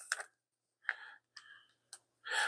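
A few faint clicks and plastic handling sounds from a power bank's built-in charging cables being fingered in their side slots. There are three, about a second in, half a second later, and a sharper click near the end.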